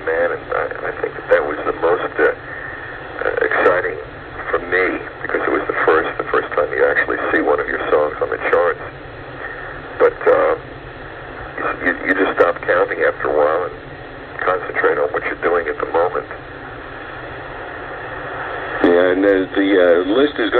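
Speech only: a man talking over a telephone line on a radio call-in broadcast, the voice thin and cut off in the highs. A different, fuller voice takes over near the end.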